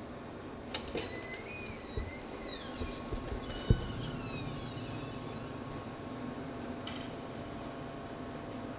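Shop's glass front door squeaking on its hinges as it is pushed open and swings shut, with a click as it is opened and a sharp thump as it closes.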